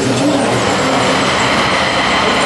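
A sound-art installation's output: a loud, dense, steady rushing noise with a faint high tone running through it.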